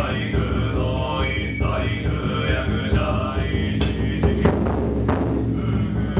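Mantra chanting, joined near the end by deep drum strikes about once a second.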